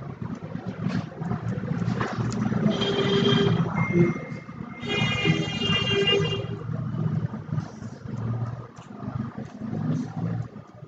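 Background traffic noise with two long horn blasts, one about three seconds in and a longer one from about five to six and a half seconds in.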